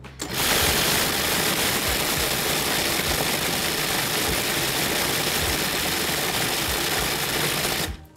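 Food processor motor and blade running steadily, giving a quick blitz to frozen-banana soft serve with peanut butter and chocolate chips, working in the peanut butter and breaking up some of the chips. It starts just after the beginning and cuts off abruptly near the end.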